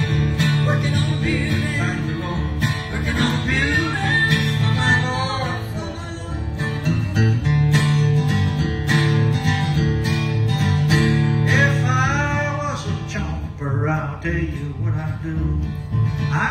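Acoustic guitar and plucked upright bass playing a bluegrass gospel song, with a steady bass line underneath and no words sung.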